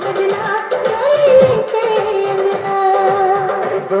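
A Tharu song with a singing voice over a steady, rhythmic percussion beat.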